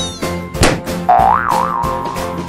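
A balloon bursts with a sharp pop as a fork pierces it, followed by a cartoon "boing" sound effect whose pitch wobbles up and down and then settles, over cheerful children's background music.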